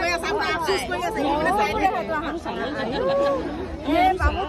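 A group of people chatting, several voices talking at once.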